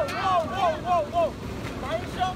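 Voices of a crowd of teenagers: a quick run of short, high voice sounds at about five a second in the first second or so, like laughing or shouting, then quieter mixed voices.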